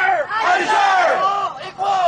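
A group of protesters shouting a call-and-response chant in unison, repeating a leader's shouted lines. There are two shouted phrases, with a short break near the end.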